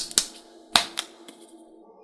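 A handful of sharp plastic clicks and taps as a big plastic lollipop is picked up and handled, the loudest a little under a second in.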